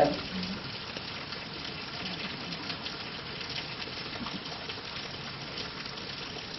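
Steady, even hiss of background room noise, with no distinct events; the tail of a spoken word is heard at the very start.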